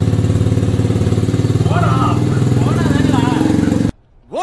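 A motorcycle engine running steadily close by, with voices over it in the middle; the sound cuts off abruptly just before the end.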